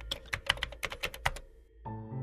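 Typing sound effect: a quick run of crisp key clicks that stops a little past the middle, over faint background music. After a brief silence, music with sustained tones begins near the end.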